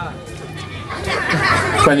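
Indistinct chatter of several voices, mostly children, growing louder toward the end.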